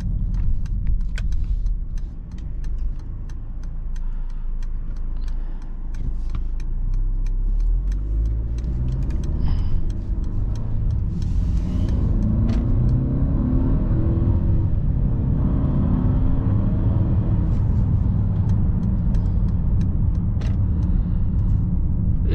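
The 2022 Mercedes-Benz GLE 350's 2.0-litre turbocharged inline-four, heard from inside the cabin under acceleration: the engine note rises from about seven seconds in and then holds, over a steady low road rumble.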